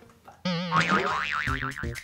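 A cartoon 'boing' sound effect: a wobbling, springy twang that starts suddenly about half a second in, with background music.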